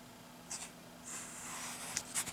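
Fingers brushing and sliding across a comic book's paper page: a short brush about half a second in, then a longer soft rubbing hiss that swells from about a second in.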